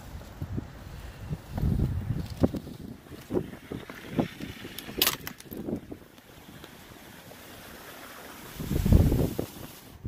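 Wind buffeting the microphone in gusts, loudest near the end, with a few light knocks and one sharp crack about five seconds in.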